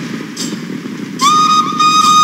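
Film background score: a rushing, noisy hiss, then about a second in a flute comes in on a long held note.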